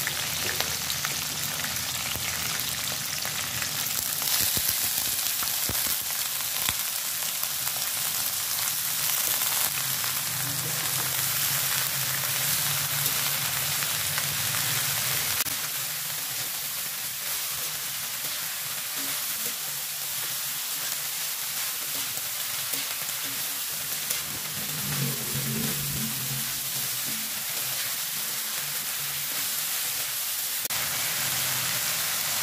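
Oil sizzling in a wok as sliced garlic and chilli fry, then as fern leaves (pakis) are stir-fried, with a metal slotted spatula stirring and clinking against the wok. The sizzle turns a little quieter about halfway through, once the wok is full of ferns.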